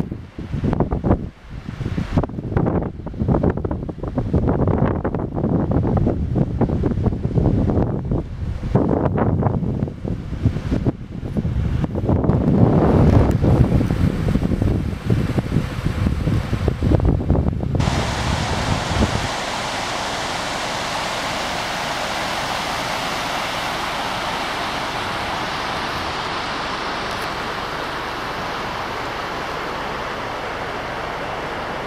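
Wind buffeting the camera microphone in irregular gusts. About 18 seconds in, this gives way to a steady rushing of water from a burn.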